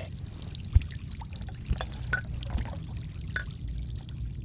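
Tap water running into a kitchen sink as dishes are washed, with a few light clinks of crockery.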